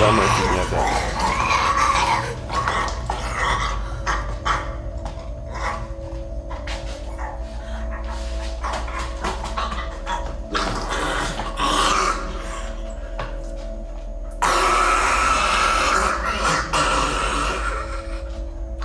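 Horror TV series soundtrack: a tense music drone of steady low tones, with rough animal-like vocal sounds over it; a sudden louder, noisier passage cuts in about fourteen seconds in.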